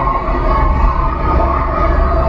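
Room full of children: indistinct chatter over a steady low rumble.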